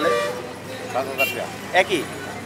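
A vehicle horn gives one short, steady toot at the start, with men's voices talking over it.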